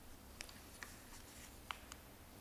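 Faint handling of a paper sheet at a wooden lectern: a few soft ticks and rustles, the sharpest near the end, over quiet room tone.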